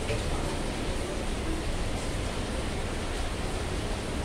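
Heavy rain pouring down, a steady, even hiss with no letup.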